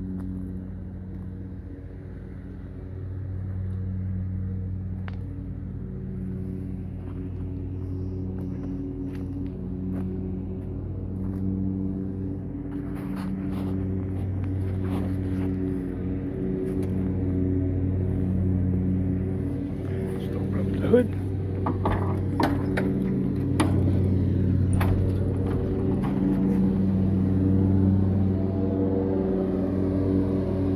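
A steady engine drone that swells and fades every few seconds, with a few sharp clicks and knocks in the second half.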